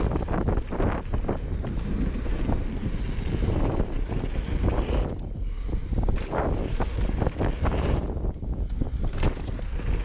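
Wind buffeting a handlebar-mounted action camera's microphone as a mountain bike runs fast down a dirt trail, over the rumble of knobby tyres and a constant clatter of the bike's frame and parts over bumps. The noise eases briefly twice, once midway and again near the end.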